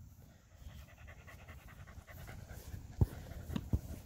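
A dog panting, faint and rhythmic, with a few sharp knocks near the end.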